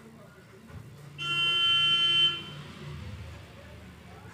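A vehicle horn sounding once, a steady high-pitched honk about a second long, with a low rumble under it that fades out soon after.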